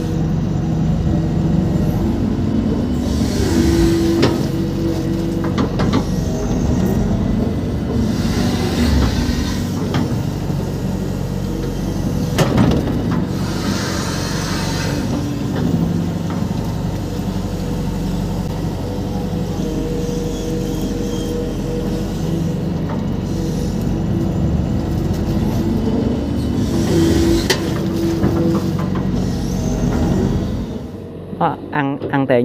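Hitachi EX120-1 excavator's diesel engine running under load, heard from inside the cab as the boom, arm and bucket dig and dump mud. The engine note swells as the hydraulics take load, with several short hissing surges and one sharp click partway through.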